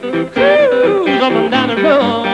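Amplified blues harmonica played cupped against a handheld microphone, wailing a melody with bent, gliding notes over sustained chords.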